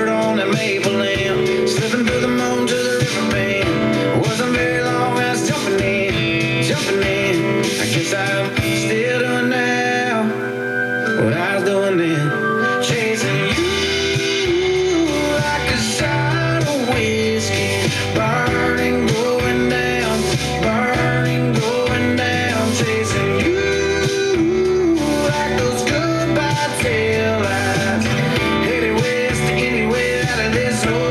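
A country song playing on FM radio: singing over guitar, bass and drums. The bass drops out about nine seconds in and comes back a few seconds later.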